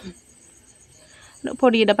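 A faint, steady, high-pitched pulsing chirr like a cricket's, with a voice starting to speak about one and a half seconds in.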